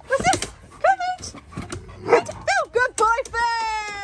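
Alaskan malamutes whining and yipping: several short rising-and-falling calls, then one long drawn-out whine near the end.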